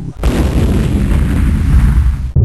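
Explosion sound effect: a loud, dense blast with a heavy deep rumble that starts a fraction of a second in and carries on unbroken.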